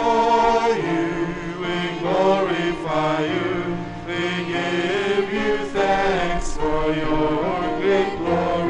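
Church singers performing the sung Gloria of the Mass in sustained melodic phrases over a steady held instrumental accompaniment.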